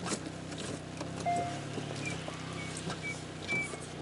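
Hyundai Veloster N's turbocharged four-cylinder engine running at low, steady revs, heard from inside the cabin, with a few faint clicks and short high squeaks. The car is stuck, failing to climb a muddy slope.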